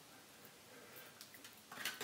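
Faint scraping and stirring of a putty knife working water-mixed wood putty in a small tray, with a slightly louder scrape near the end.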